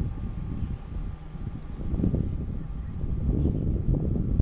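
Wind buffeting the microphone in an uneven low rumble, with two or three faint bird chirps about a second in.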